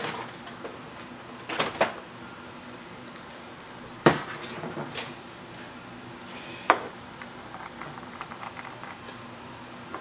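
Four sharp clicks and knocks of small glass nail-product bottles and their brush caps being handled and set down on a desk. The loudest comes about four seconds in.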